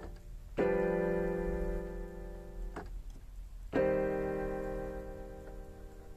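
Improvised piano chords played on a digital piano: one full chord struck about half a second in, held and fading, then released just before a second chord is struck near four seconds in and left to ring down.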